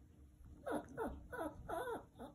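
Chihuahua whimpering: four short whines in quick succession, each falling in pitch. The owner takes the whining as him asking to be fed.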